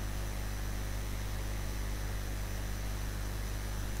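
Steady hiss with a low hum underneath, unchanging throughout, with no distinct events.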